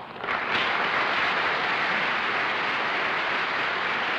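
A studio audience applauding. It breaks out suddenly, reaches full strength within about half a second, and holds steady.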